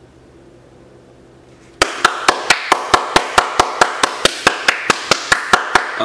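One person clapping their hands alone, steadily at about five claps a second for some four seconds, starting about two seconds in.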